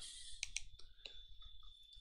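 A few faint, short computer mouse clicks while a score is navigated on screen.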